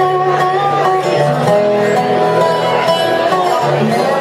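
Small acoustic band playing a bluegrass-style number: a resonator guitar (dobro) being picked over an upright bass line, with held, sliding melody notes on top.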